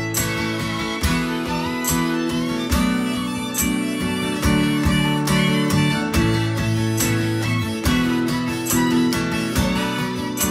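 Acoustic guitar strummed in a steady rhythm, a strum stroke a little under every second, with a rack-held harmonica playing long held notes over it: an instrumental break with no singing.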